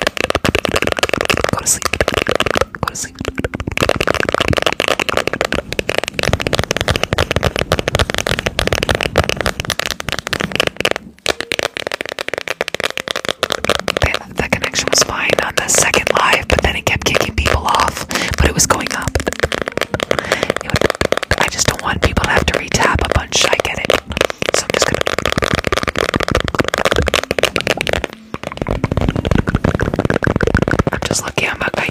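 ASMR trigger sounds: rapid, dense tapping and crackling, mixed with whispering. It goes on steadily, with short breaks about 3, 11 and 28 seconds in.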